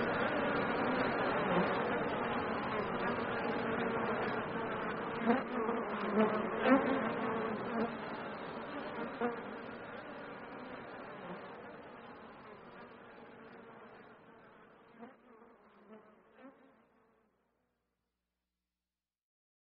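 Outro of an electronic remix: a dense, steady buzzing drone like a swarm of insects, fading slowly away with a few brief louder blips, until it dies out near the end.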